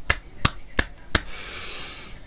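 Four sharp clicks or snaps in an even rhythm, about three a second, followed by a soft hiss of breath-like noise.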